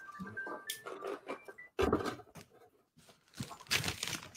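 Cardboard box and packing material being handled, in short rustling bursts, with the sound cutting out completely for under a second in the middle.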